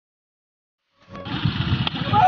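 Silence, then about a second in, a motorcycle engine idling with a low, fast pulsing beat, and a single short click near the end.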